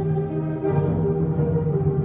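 School concert band (wind ensemble) playing live, holding sustained low chords that shift to new notes about a third of the way in.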